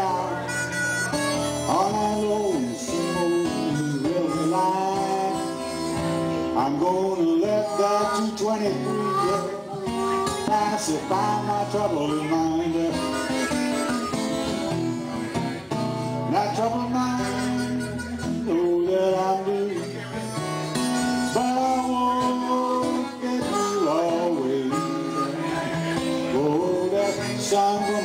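Blues harmonica played into a vocal microphone, with notes bent up and down, over steady acoustic guitar strumming: an instrumental break between verses.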